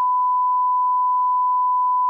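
A censor bleep: a single steady 1 kHz tone held unbroken for a couple of seconds, masking a spoken case number in a played-back voicemail.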